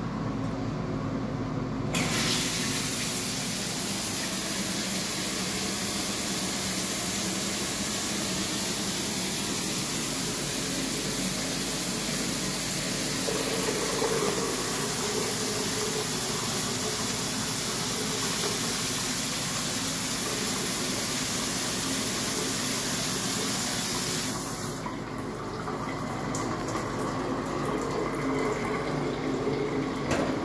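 Walk-in shower running. The spray starts abruptly when the lever valve is turned on about two seconds in, runs as a steady rushing hiss, and cuts off suddenly a few seconds before the end.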